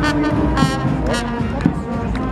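Marching brass band playing in the street, with held brass chords and a few sharp percussive hits, and crowd voices close by.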